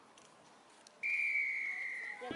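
Referee's whistle: one long, steady blast starting about a second in, its pitch sagging slightly toward the end.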